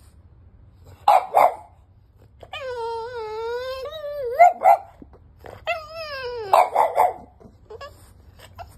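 French Bulldog puppy demand-barking to be let onto the bed: two sharp barks, a long wavering whine-howl, two more barks, another drawn-out whine falling in pitch, then three quick barks.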